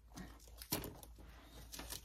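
Faint handling noises from a small paper gift box: a sharp click under a second in and a few light ticks near the end.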